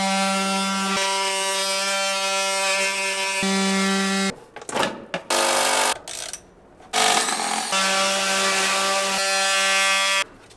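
Handheld power tool cutting into the plastic case of a LiFePO4 battery. It runs as a steady buzzing hum in long stretches, stopping and restarting a few times. In the middle there are short pauses and a brief run at a different pitch.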